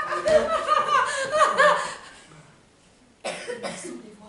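A single voice laughing loudly in repeated pitched bursts, dying away about two seconds in, then a short rough cough a little past three seconds in.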